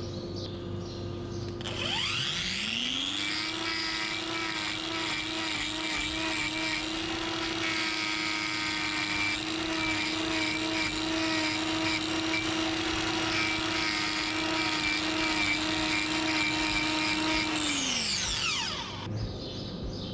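Hand-held angle grinder grinding a cow's hoof. It spins up about two seconds in, runs with its pitch wavering slightly as it bites into the horn, then winds down near the end.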